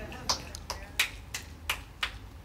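Finger snaps, six in a row at about three a second, the loudest about a second in.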